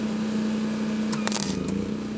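Flux-core wire MIG welding arc from a Hobart Handler 210 MVP crackling and spitting unevenly, with a burst of sharp pops about a second and a half in, over a steady low hum. The arc is unstable and is pushing the workpiece off, which is traced to a poor ground connection.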